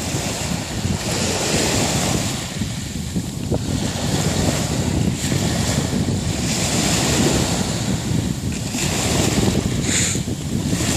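Small sea waves washing up a shingle beach, the hiss of the wash swelling and fading every few seconds. Wind buffets the microphone throughout.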